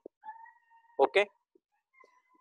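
A faint, high-pitched call held steady for about a second, most likely an animal in the background. It is heard again briefly near the end, under a short spoken "okay, okay?".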